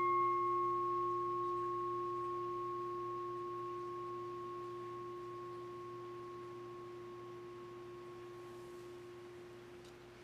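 A consecration bell struck once, ringing on in a clear steady tone that slowly fades over about ten seconds. It marks the elevation of the host at the consecration of the Mass.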